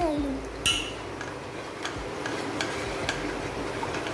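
A hand stirring a thin yogurt batter in an enamel pot, with a sharp clink under a second in and light scattered knocks against the pot.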